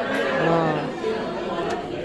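Several people chattering over one another, the voices overlapping and indistinct.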